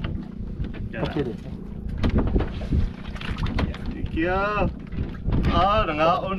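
Wind rumbling on the microphone under a steady low hum, with a man's voice in two short pitched calls, about four seconds in and again near the end.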